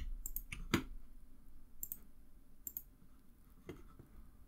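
Computer mouse clicking, a handful of separate clicks at irregular intervals, the loudest a little under a second in, over a faint low hum.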